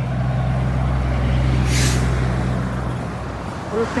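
A diesel semi-truck passing close by, its engine giving a loud, steady low hum that fades about three seconds in. A short hiss of air comes from the truck about halfway through.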